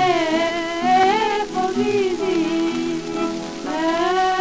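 Greek Dodecanese folk music played from a 1947 His Master's Voice 78 rpm shellac record: a high melody with gliding, wavering notes over lower accompanying notes, with the disc's surface noise underneath.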